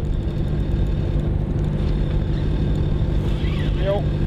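A fishing cutter's engine running steadily, a constant low drone.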